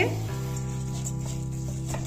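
Background music with steady held chords. Under it is a faint sizzle of washed moong dal and rice going into the hot pressure cooker with the vegetables.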